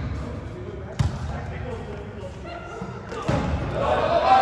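A volleyball struck by hand twice during a rally, about a second in and again past three seconds, each smack echoing in a gym, amid players' voices.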